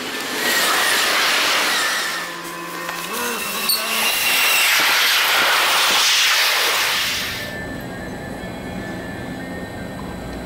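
Electric trains passing close at speed: a loud rushing of wheels and air in two surges, the second as a freight train's container wagons go by. About seven and a half seconds in, the sound drops abruptly to the quieter steady hum of a TILO electric multiple unit standing at a platform.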